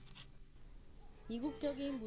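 A woman's speaking voice that starts a little over halfway in, after about a second of near-quiet room tone.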